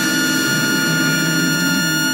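Music with a long held chord of several sustained notes, the drums gone quiet; it stops shortly after.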